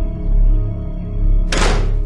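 Drama-score background music with a low pulsing beat. About one and a half seconds in, an interior door is pushed shut with a brief thunk.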